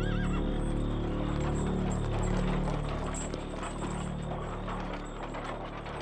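A horse whinnies briefly at the start, then hooves clip-clop in a run of quick strikes over steady background music, fading near the end.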